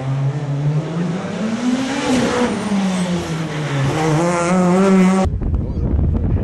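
Skoda Fabia S2000 rally car's naturally aspirated four-cylinder engine revving hard, its pitch rising and falling several times. About five seconds in the sound cuts off abruptly to a low wind rumble on the microphone.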